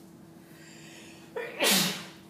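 A person sneezing once, a sudden loud burst about a second and a half in.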